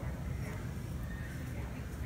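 Quiet room tone: a steady low hum with no distinct events.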